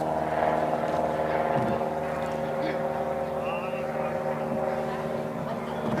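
A steady engine drone with many evenly spaced overtones, easing off slightly over the seconds.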